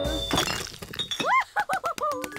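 Cartoon sound effect of glass bottles shattering about half a second in, with a few clinks after it. It is followed by a quick run of rising-and-falling whistle-like tones.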